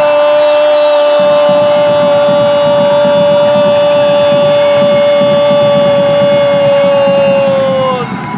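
A football commentator's long held shout of "goal", one loud unbroken high note that sags in pitch and breaks off at the very end, over crowd noise; it marks a goal just scored.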